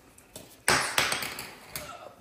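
Brief handling noise: a sudden rustling scrape with a light tap just after it, a little under a second in, as the lamp's plastic shade and cap are picked up.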